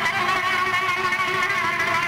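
Live band music: an instrumental passage with a wavering lead melody over steady accompaniment.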